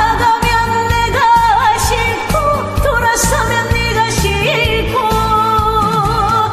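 A woman singing a Korean trot song live over a backing track, with no pitch correction, holding notes with a wide vibrato.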